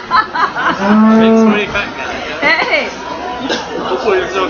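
A Holstein cow mooing once, a single short call of under a second, about a second in.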